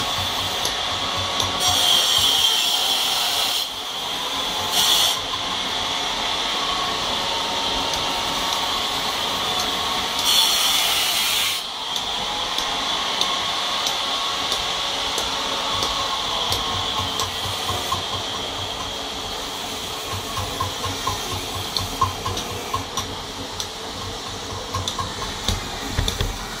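Hand tool working a marble statue: a steady scraping hiss, with three louder bursts of hiss in the first half and quick light ticks near the end.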